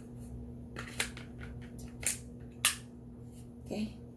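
Sharp clicks of a Glock 43X being handled as a loaded magazine is pushed into its grip. There are three distinct clicks, about one, two and two and a half seconds in, and the last is the loudest.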